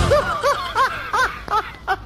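A person laughing: a string of short, pitched "ha" sounds, about three a second, fading toward the end.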